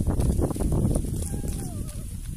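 Hoe chopping into dry field soil among maize stalks: a quick run of dull thuds with rustling, plus a faint wavering whistle-like tone in the second half.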